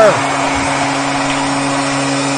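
Arena goal horn blaring a steady low tone after a goal, over a wash of crowd noise.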